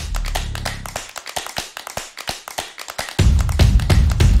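Electronic news theme music: a run of quick ticking percussion with the bass pulled out, then a heavy pulsing bass comes back in about three seconds in.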